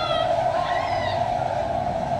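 Loud, steady droning from a stage production's soundtrack, with wavering high tones gliding over it.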